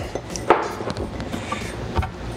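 Light handling sounds as sliced jalapeno goes into a glass mason jar and hands work at a wooden cutting board: one sharp tap about half a second in and another near the end, over a faint steady low hum.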